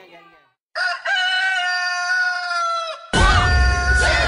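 Rooster crowing: one long drawn-out crow starts abruptly about a second in and falls away at its end. A second crow follows near the end over a loud low rumble.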